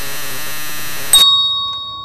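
Synthesized intro jingle: a dense, steady electronic sound that stops about a second in with a sharp, bell-like hit, whose bright tones ring on and fade away.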